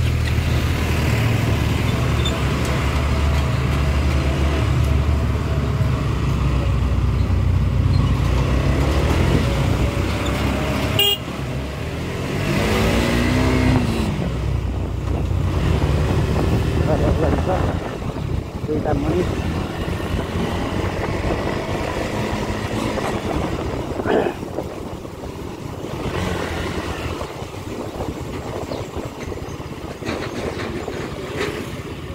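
Motorcycle engine running while riding along a town street, with a strong low rumble for the first part and the engine rising and then falling in pitch about halfway through. Vehicle horns honk in the traffic.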